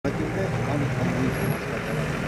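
Street noise: a motor vehicle engine running steadily, with some faint voices.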